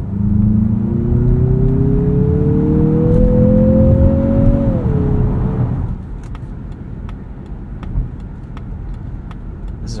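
2023 Mazda CX-50's 2.5-litre turbocharged inline-four accelerating, heard from inside the cabin, its tone rising steadily in pitch. About five seconds in the pitch drops and the engine eases off, leaving quieter road and tyre noise.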